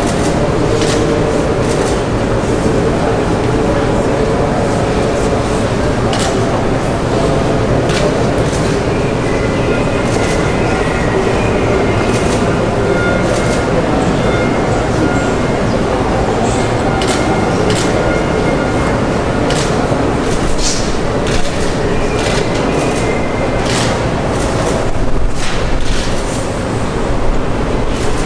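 Steady murmur of a roomful of people talking quietly, with many scattered sharp clicks.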